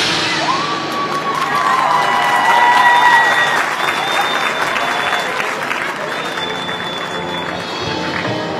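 Stadium crowd applauding and cheering for a marching band, with a few long held cries and whistles rising above the clapping.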